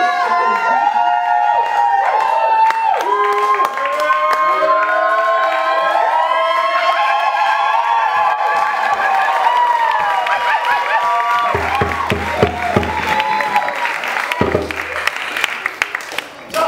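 A group of voices singing together in sustained, overlapping notes. Cheering and applause rise over it in the last few seconds.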